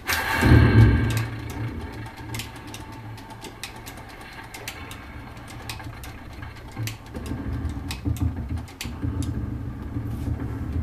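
Bassoon played with extended technique: low, rough, buzzing tones, loudest about half a second in and swelling again in the last few seconds, with many scattered clicks of the keys and pads.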